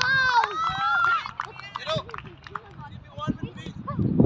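A child's high-pitched shout in the first second or so, then fainter scattered children's voices with a few small knocks.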